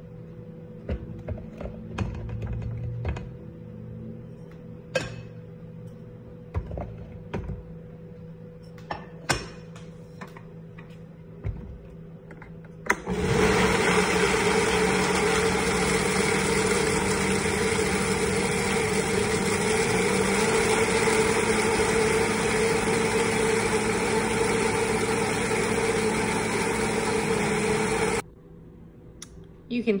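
A Vitamix blender starts about halfway through and runs at a steady high speed for about fifteen seconds, grinding whole oats and dry ingredients into flour, then cuts off suddenly. Before it starts there are scattered light knocks and clicks.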